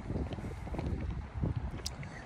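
Wind buffeting a handheld phone's microphone while walking, an uneven low rumble.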